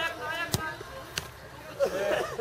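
Two sharp thuds of a football being struck, about two thirds of a second apart.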